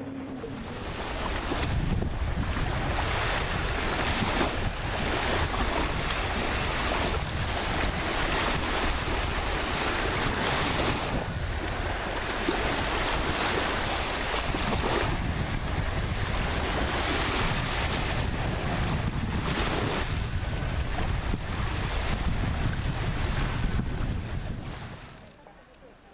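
Wind buffeting the microphone in gusts, a rough rumbling noise, over the wash of sea surf. It drops away abruptly near the end.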